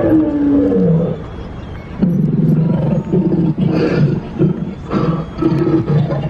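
Recorded dinosaur roar and growls played from an animatronic Titanoceratops's sound-effects speaker: a long roar falling in pitch in the first second, then a run of low pulsing growls from about two seconds in.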